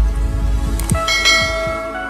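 Animated logo intro sting: low thumps that drop in pitch, then about a second in a ringing, bell-like chime that holds and slowly fades.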